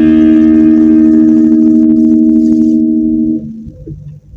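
LTD AX-50 electric guitar played straight into a Quake GA-30R amp with no pedal: a held chord rings and slowly fades, then is choked off about three and a half seconds in.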